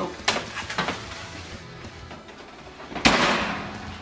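A metal baking tray clinks against the oven rack as it is pulled out, then the oven door slams shut about three seconds in, the loudest sound, ringing briefly. Background music plays throughout.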